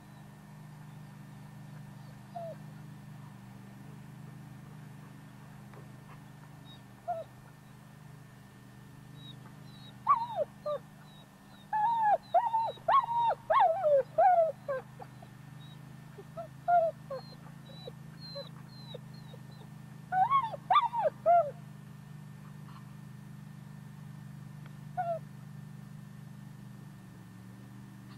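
A dog whining and yipping: a few single short whines, then two bursts of rapid high yips, about ten seconds in and again about twenty seconds in.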